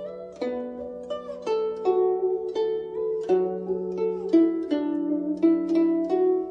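Guzheng (Chinese zither) playing a slow traditional Chinese melody: single plucked notes, about two a second, some of them bent in pitch as they ring, over a held low note.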